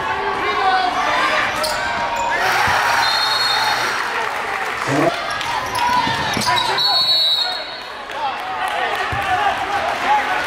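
Gymnasium crowd chatter during a basketball game, with a basketball bouncing on the hardwood court and a couple of short high squeaks partway through.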